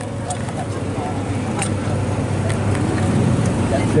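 Low rumble of engines in the background, growing gradually louder, with faint voices.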